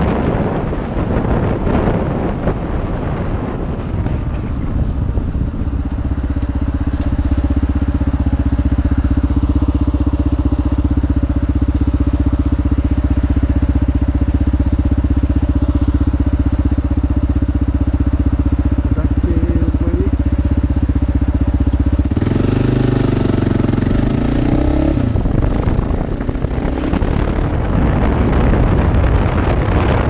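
Motorcycle heard from the rider's helmet camera, with wind rushing over the microphone at speed. For a long stretch in the middle the engine idles steadily. About two-thirds of the way through it pulls away, its revs rising and falling, and wind and road noise build up again.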